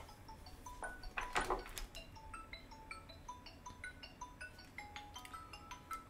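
A simple electronic melody of short beeping notes, about three or four a second, stepping up and down in pitch like a phone ringtone, with a few faint clicks about a second in.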